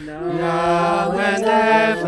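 A cappella group of mixed male and female voices singing held chords in close harmony, with no instruments. The harmony shifts to new notes about a second in.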